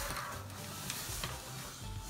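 Scissors, a ruler and paper being slid across a tabletop: a dry scraping and rustling with a couple of light clicks about a second in, over quiet background music.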